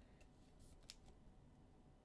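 Near silence, with a few faint clicks and rustles of a trading card being handled and turned in the fingers.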